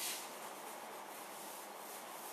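A chalkboard being wiped with a hand eraser, erasing chalk writing: a louder stroke right at the start, then softer steady rubbing.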